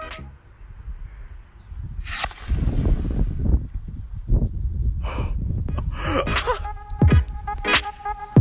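Homemade sugar rocket motor, its fuel mixed with rust, lighting with a sudden rush of noise about two seconds in and burning with a rushing noise for about three seconds as it lifts off. Background music comes back in near the end.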